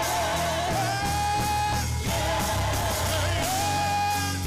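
Church praise team singing a worship song with keyboard accompaniment, the voices holding long notes of about a second each, phrase after phrase.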